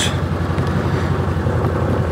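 Side-by-side UTV engine idling steadily, with the spray rig's pump pushing water through the nozzles into a plastic bucket as a steady hiss over the low engine hum, during a flow-rate calibration run.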